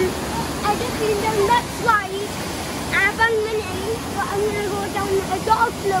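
Steady rush of running pool water, with a voice heard over it on and off.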